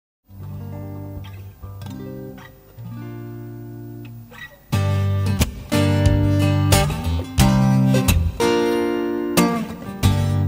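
Instrumental intro of a live acoustic band led by acoustic guitar, soft at first and growing fuller and louder about five seconds in, with repeated struck notes over a low bass.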